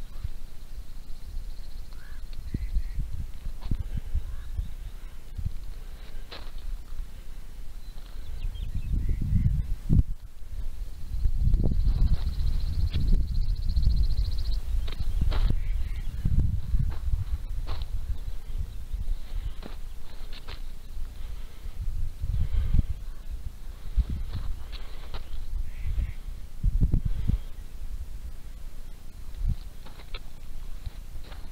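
Wind buffeting a handheld camera's microphone in gusts, a low rumble that swells and fades, strongest in the middle of the stretch. Occasional sharp clicks are heard over it.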